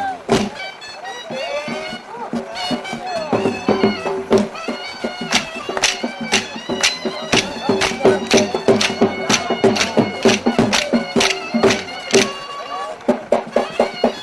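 Traditional Balochi folk dance music: a melody plays over a steady drone, with a drum beating steadily throughout. It is a little quieter for the first couple of seconds.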